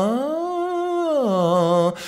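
A man's voice sings one continuous tone that glides smoothly up about an octave, holds, and slides back down near the end. It demonstrates going in and out of chest voice and head voice through mixed voice.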